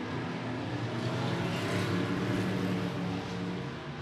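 IMCA Northern Sport Modified dirt-track race cars going by side by side, their V8 engines running hard at speed. The sound swells toward the middle and eases off near the end.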